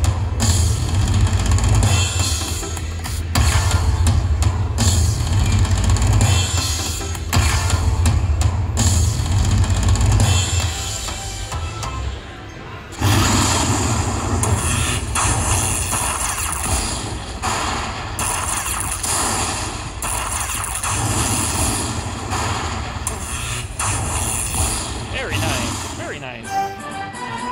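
Aristocrat Lightning Cash Magic Pearl slot machine playing its free-spin bonus music with a heavy bass beat. About halfway through the music dips briefly, then a new tune starts as the win is tallied.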